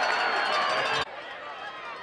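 Stadium crowd noise, many voices shouting and talking at once, loud, then cut off suddenly about halfway through and replaced by a quieter crowd murmur with scattered voices.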